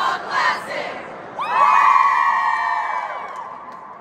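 A group of cheerleaders' voices: a unison chant ends about a second in, then the whole squad breaks into a loud, high-pitched group cheer and screaming that gradually fades away.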